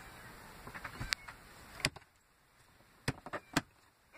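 A handful of separate sharp clicks and light knocks, two in the first half and three in quick succession near the end, over a faint background hiss.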